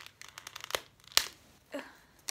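Retail packaging of a phone grip being pulled open by hand: a run of crinkles and crackles, then a single sharp snap a little over a second in, followed by a short grunt of effort.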